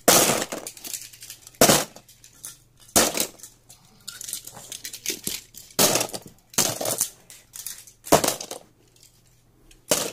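Handfuls of die-cast Hot Wheels toy cars dropped into a plastic storage tub, clattering against the tub and the other metal cars in a string of separate bursts, roughly one every second or so.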